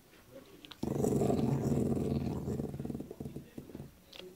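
Cavalier King Charles spaniel growling over its meaty bone, warning off whoever comes near it. One low, rough growl starts suddenly about a second in and fades out after about two and a half seconds.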